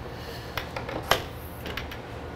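Metal clicks and knocks as a fire engine's aluminium compartment hardware is handled and a hinged diamond-plate panel is lifted: a few sharp clicks, the loudest about a second in.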